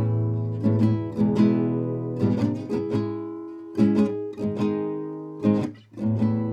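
Solo acoustic guitar, chords plucked and strummed in an unaccompanied instrumental stretch, each chord left to ring and fade before the next group of strokes.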